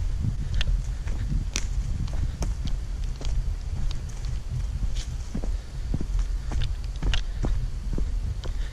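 Footsteps on a forest trail: irregular, scattered crunches of leaf litter and twigs underfoot, over a steady low rumble on the microphone.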